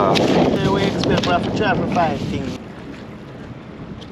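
Wind buffeting the microphone, with indistinct voices for the first two and a half seconds, then dropping to a quieter steady rush.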